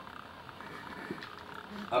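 Steady low background hiss of the hall during a pause in a man's speech at a microphone; his voice comes back right at the end.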